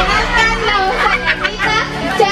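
Girls' voices: a girl speaking through a microphone amid chatter from the seated group of girls, over steady background music.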